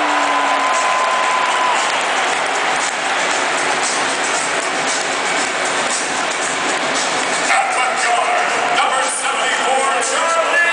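Large stadium crowd noise, with amplified music and voice over the public-address system echoing through it. A single high note is held through the first two seconds.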